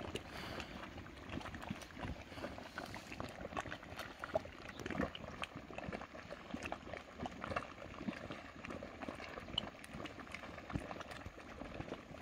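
Geothermal hot mud pool bubbling: gas bubbles burst through the mud in irregular small pops and plops.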